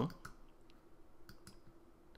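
A handful of faint, sharp clicks, spaced irregularly, over a faint steady hum.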